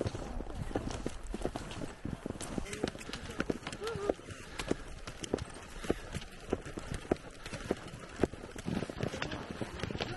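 Ski tourers skinning uphill on snow: a run of irregular clicks and knocks from ski poles planting and skis with touring bindings stepping along, several a second, over the swish of skis sliding.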